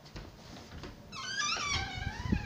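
A dog whining: a high, wavering whine lasting about a second, starting about a second in, over soft low thuds.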